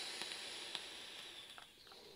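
Faint hiss of a long draw on a vape, with air pulled through the atomizer, slowly fading away.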